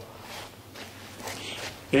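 Faint footsteps and light shuffling on a concrete floor during a pause in talk.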